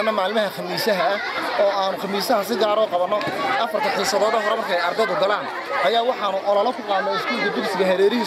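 Speech: a man talking without pause, with the chatter of a crowd of students behind him.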